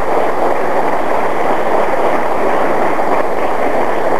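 Audience applauding steadily at the end of a talk, an even, dense clatter of clapping.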